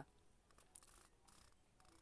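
Near silence: room tone, with a few faint, brief ticks.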